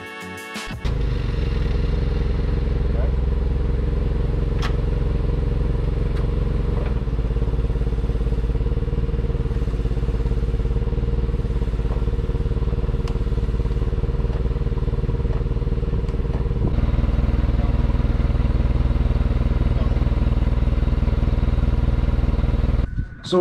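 Nissan forklift engine running steadily, a low even drone that gets louder for the last few seconds.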